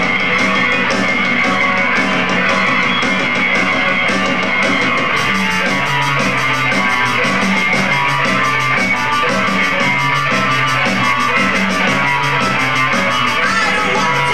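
Live no-wave rock band playing loud, with electric guitars and a drum kit. About five seconds in, a low two-note figure starts repeating over quick cymbal strokes.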